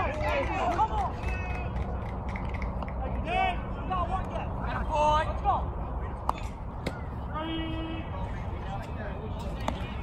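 Players' shouts and chatter across a baseball field, in scattered short calls with one held call near the middle, over a steady low hum. Two sharp knocks stand out, one about six seconds in and one near the end.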